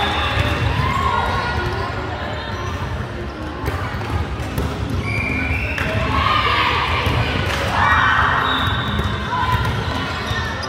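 Balls bouncing on the hard wooden floor of a large sports hall, a few sharp thuds, amid echoing shouted calls from players and people in the hall.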